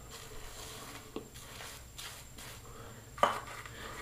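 Horsehair shaving brush working fresh lather onto the face: faint wet brushing, with a small click about a second in and a brief, louder tap just after three seconds.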